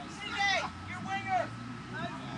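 Two shouted calls from players or people at the pitchside, high and drawn out, heard from a distance. A low steady hum comes in underneath about a second in.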